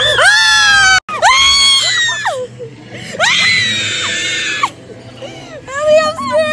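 Riders screaming on an amusement ride: three long, high-pitched screams of a second or more each, with a brief dropout in the sound about a second in.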